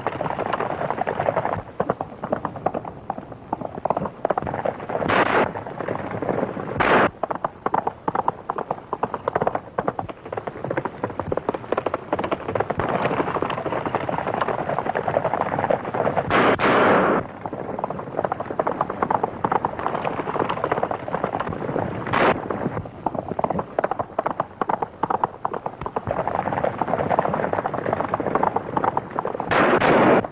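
Hoofbeats of several galloping horses in a dense, rapid patter, with about five gunshots sounding over them at intervals.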